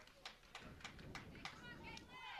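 Faint ballpark ambience: distant voices from the stands and dugout, with a few soft clicks.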